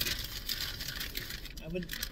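Paper food wrapper rustling and crinkling in the hands, a busy crackly rustle that fades about a second and a half in, followed by a couple of spoken words near the end.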